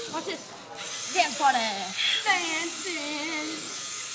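Several children's excited voices, high-pitched and swooping, shouting and squealing over a steady background hiss.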